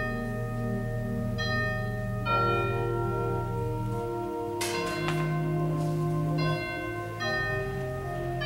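Church organ music with bell-like chime notes ringing over a held bass note, the notes changing every second or so. A sharp knock sounds a little past halfway.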